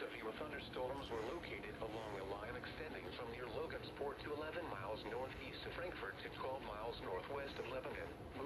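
Speech only: a voice over a radio reading out a severe thunderstorm warning.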